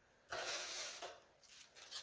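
Handling noise: a stack of trading cards in plastic holders rustling and scraping against each other and the cardboard box as they are picked up, in one noisy stretch of about a second, then softer shuffling near the end.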